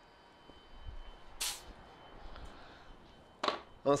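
Compression tester gauge being vented: one short, sharp hiss of air about a second and a half in, among faint handling and footstep knocks.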